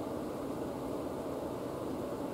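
Room tone: a steady low hiss with no distinct sound in it.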